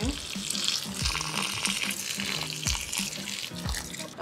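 Water pouring in a steady stream from a watering can's spout onto potted plants and their soil.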